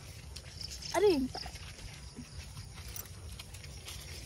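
A short laugh with a falling pitch about a second in. Under it, faint steps of a small horse walking through grass while carrying several riders bareback.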